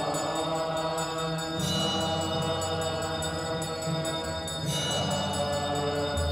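Devotional chanting during a Hindu arati lamp offering: voices chanting a hymn together over a sustained low drone, with a small hand bell ringing in a steady rhythm.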